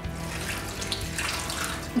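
Beer brine poured from a glass measuring jug into a plastic zip-top bag of pork rib chops: a steady trickle and splash of liquid.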